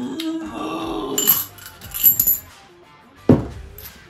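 A half-dollar coin clinking into a small glass tumbler: two sharp metallic clinks about a second apart, then a single knock on the table near the end.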